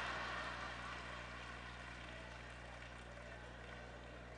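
Congregation in a large hall reacting with a soft wash of laughter and murmuring that slowly fades away, over a low steady hum.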